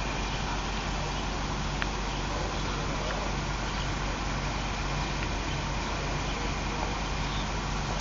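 Steady distant road-traffic hum and hiss, even in loudness, with no single passing vehicle standing out.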